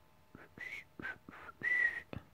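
A person whistling a short run of about five quick breathy notes, the last one longest and loudest.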